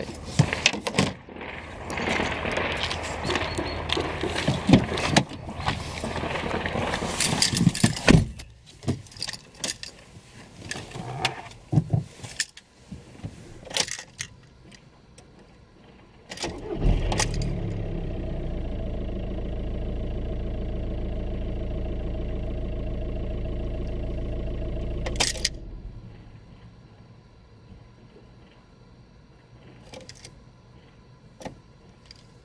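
Rustling and clicking of handling for the first part, then a VW Golf's Pumpe-Düse TDI diesel engine is started just past halfway through. It idles steadily for about eight seconds and is then switched off, a test start after the PD injector loom connector was reseated.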